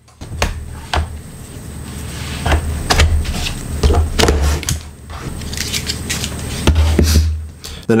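Plastic clicks and rattles of a laptop's battery latches being slid to unlock and the battery pack being slid out of its bay, with several sharp clicks spread through and low thumps of the laptop being handled on the table.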